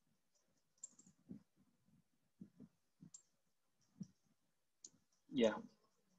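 Faint computer mouse clicks, about eight of them at irregular intervals, as fields are dragged and dropped in Tableau, followed by a short spoken "yeah" near the end.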